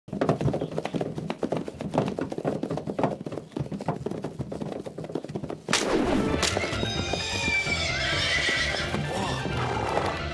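Horses pulling a carriage at speed: rapid hoofbeats on dirt, then a sudden loud crash of wood about six seconds in. After the crash the horses whinny with high, wavering calls, over a music track.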